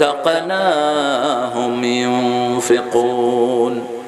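A man's voice chanting Qur'anic verses in Arabic in a slow melodic recitation, holding long notes with gliding ornaments. He breaks off near the end.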